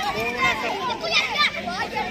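Several boys' voices shouting and calling over one another, high-pitched and continuous.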